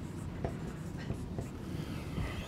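A pen writing on a whiteboard: light scratching strokes with a few short sharp taps, the loudest about half a second in, over a low room hum.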